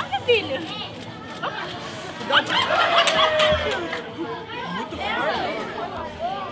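Indistinct chatter of a crowd of children and adults talking over each other, with high children's voices calling out.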